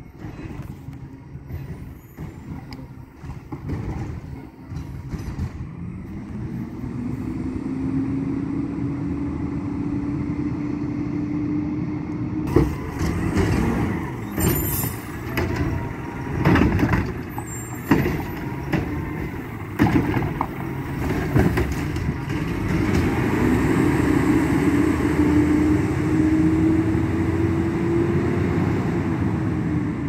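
Mack LEU garbage truck with a Heil Curotto-Can arm: the diesel engine revs up and holds while the truck works a cart. A run of loud bangs and knocks follows as the cart is handled and emptied, with a brief high squeal among them. Near the end the engine revs up again, then eases off as the truck pulls away.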